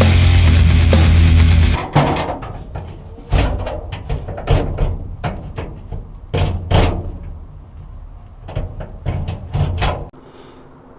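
Background music runs until it stops about two seconds in. Then a B&M cable floor shifter's lever is worked back and forth through its gear positions, giving a series of sharp metallic clicks and clunks at uneven intervals.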